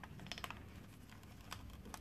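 Faint, scattered light clicks, about five in two seconds, over quiet room tone.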